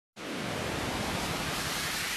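Synthesized white-noise sweep opening a dance track: a steady wash of hiss that starts a moment in, with a faint rising tone high up.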